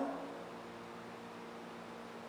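Quiet room tone with a steady low hum, right after the tail of a man's spoken command "down" at the very start.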